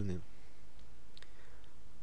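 A man's voice trailing off, then a pause holding a steady low hum and three or four faint, short clicks.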